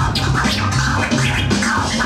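Turntable scratching: a vinyl record pushed back and forth by hand, its pitch sweeping up and down several times a second and chopped with the mixer's crossfader, over a hip hop beat with a steady bassline.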